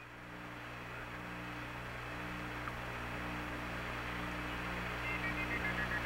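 Steady hiss with a low electrical hum from the Apollo 11 air-to-ground radio and TV downlink during a pause in the communications, slowly getting louder, with a few faint short high tones near the end.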